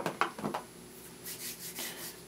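Hands handling a small makeup container: a few light clicks in the first half second, then faint rubbing.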